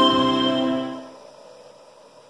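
Instrumental music played through a DIY flat-panel (distributed-mode) speaker driven by an audio exciter, fading out about a second in and leaving quiet room noise.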